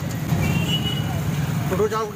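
Busy street traffic: a steady low rumble of vehicle engines close by, with people's voices around, and a short high beep about half a second in.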